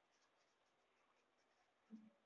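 Very faint pencil writing on paper: a string of short, light scratching strokes as letters are written, with a soft low thud near the end.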